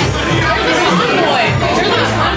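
Several people chatting over one another at a table, with background music playing.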